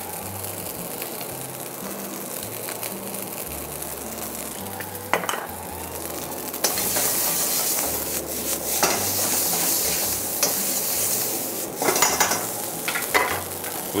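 Egg fried rice sizzling in a Chinese wok while a metal ladle stirs and breaks it up, with occasional sharp clacks of the ladle against the wok. The sizzle grows louder about halfway through.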